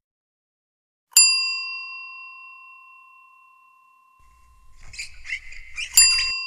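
A notification-bell 'ding' sound effect: one bright strike about a second in that rings and fades away over about three seconds. Near the end come soft scuffing noises, then a second ding.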